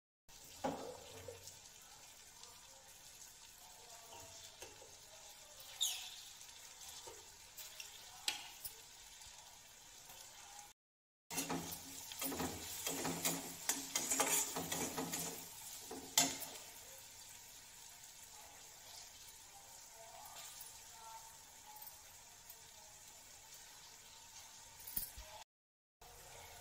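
A spiced onion-and-pea masala frying faintly in a kadhai on a gas burner, with a spatula scraping and stirring in the pan for a few seconds near the middle, plus a few odd clinks.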